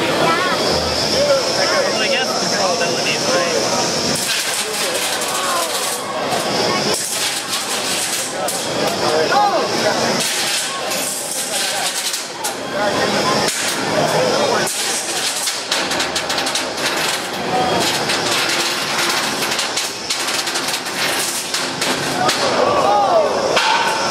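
An antweight combat robot's spinning blade weapon whining at a high pitch, the whine coming and going, with scattered knocks and clatter of the small robots striking each other and the arena, over steady crowd chatter.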